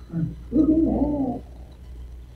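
A person's voice, a brief murmur and then a hummed, closed-mouth 'mmm' of agreement lasting about a second.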